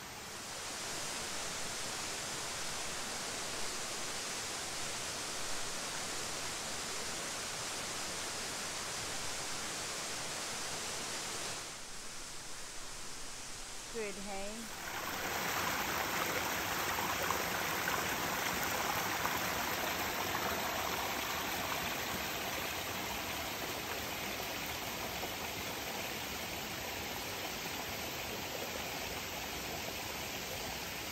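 Creek water rushing and splashing over rocks in small cascades: a steady rush that briefly drops away about twelve seconds in and comes back louder after a short call.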